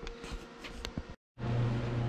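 Faint room noise with a few soft clicks, then a short dropout to silence where the recording cuts. After the cut a steady low hum carries on to the end.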